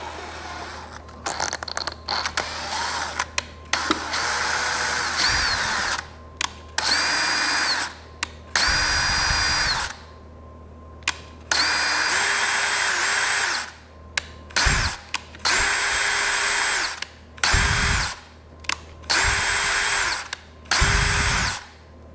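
Cordless drill/driver driving screws, running in about eight short bursts of a second or two each with brief pauses between, each burst a steady whine.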